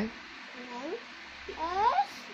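A baby making two high-pitched rising squeals, a short faint one a little under a second in and a louder, longer one near the end.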